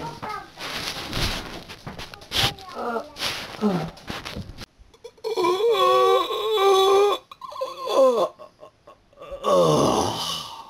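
A person's drawn-out wailing cry with a wavering pitch, starting about five seconds in and lasting some three seconds, then a shorter cry falling in pitch near the end, after a few knocks early on.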